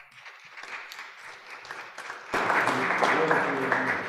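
Congregation applauding with voices mixed in, the clapping growing suddenly louder a little past halfway.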